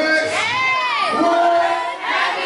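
An audience shouting and yelling at a live rap show, with one loud voice swooping up and then down in pitch about half a second in.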